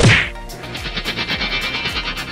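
A single sharp whack right at the start as a tortilla is slapped against a person, dropping quickly in pitch, followed by background music.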